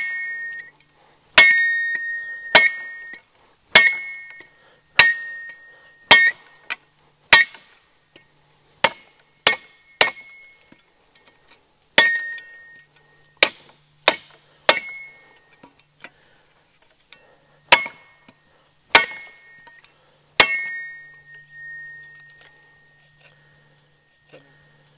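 Cold Steel Special Forces (Spetsnaz) shovel's sharpened steel blade chopping a dry, seasoned hardwood branch: about seventeen hard strikes, most about a second apart with a few short pauses. Each strike leaves the steel blade ringing with a clear, high tone, and the last one rings the longest as it fades.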